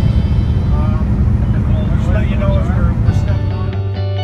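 Small boat under way, its outboard motor running with a steady low rumble. About three and a half seconds in, this changes abruptly to guitar music.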